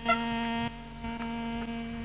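Harmonium sustaining a quiet, steady note, its level dipping slightly under a second in.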